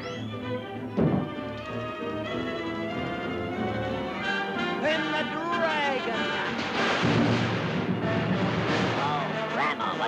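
Orchestral cartoon score playing busily, with a sharp crash about a second in. Swooping up-and-down notes come around the middle and again near the end.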